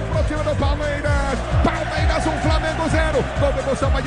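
Radio goal jingle: a burst of music with a fast, steady drumbeat played straight after the goal call.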